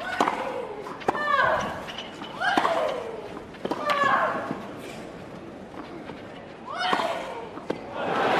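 Tennis rally on clay: a run of racket strikes on the ball, each with a player's short, high-pitched shriek that falls in pitch. There is a lull of about two seconds in the middle, then a last shot and shriek near the end.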